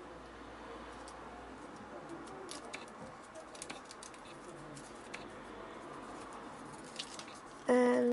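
Origami paper rustling softly with small scattered crinkles and ticks as fingers spread open the folded flaps of a paper lily.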